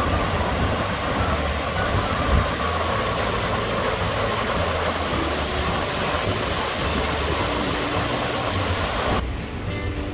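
Water of a wide, low waterfall pouring over rock ledges, a steady rush of noise. It cuts off abruptly about nine seconds in, leaving quieter background music.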